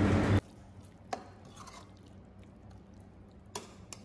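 A spatula stirring thick, wet prawn masala in a kadai, with a hissing, squelching sound that cuts off suddenly about half a second in. Then it is quiet, apart from two faint clicks, one about a second in and one near the end.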